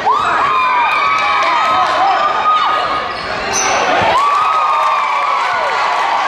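Basketball bouncing on a hardwood gym floor, with crowd voices and shouting echoing in the gym.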